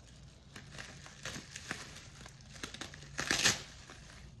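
Crinkling of wrapping or packaging being handled: scattered rustles, with one louder crinkle about three seconds in.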